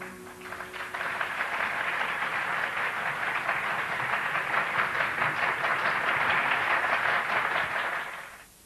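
Audience applauding steadily after a piece ends, with the last held note of the ensemble dying away in the first second.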